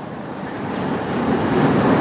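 A rushing, hiss-like noise with no words in it, swelling steadily louder through the pause.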